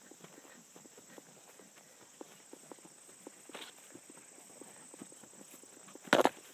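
Faint hoofbeats of a horse walking at a relaxed pace on a soft dirt-and-grass trail, several light ticks a second, with one brief louder hiss about three and a half seconds in.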